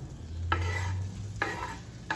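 Diced ham scraped off a wooden cutting board into a frying pan, two short scrapes about a second apart, with light sizzling as the pieces land in the hot pan.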